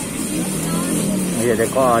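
A small motor vehicle's engine humming steadily in street traffic, with a boy's speech starting over it about one and a half seconds in.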